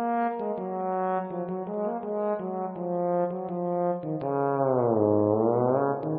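Trombone solo playing a run of short held notes, then about four seconds in sliding down in pitch and back up again.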